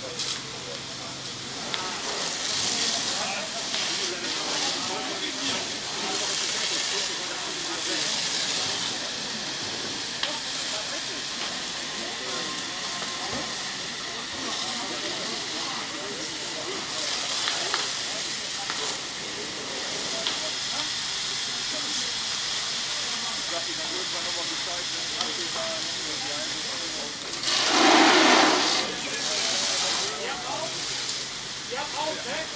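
Water jet from a fire hose spraying onto burning debris, a steady hiss, with a louder rush about two seconds before the end.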